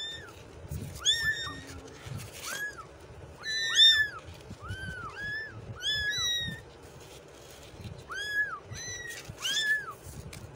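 Several young kittens meowing repeatedly, about a dozen high mews that rise and fall in pitch, some overlapping one another. Soft low thuds sound beneath the calls.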